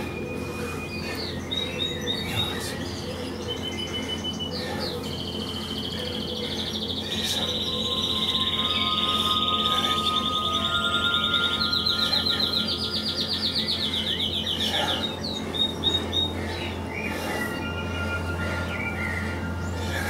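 Garden birds chirping and singing, with a long, fast trill from about seven to fifteen seconds in as the loudest part. A steady low hum runs underneath.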